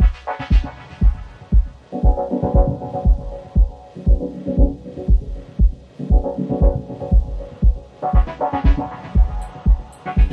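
Dub techno track with a steady four-on-the-floor kick drum about two beats a second and a sustained chord pad that swells in every two seconds. Hi-hats join near the end.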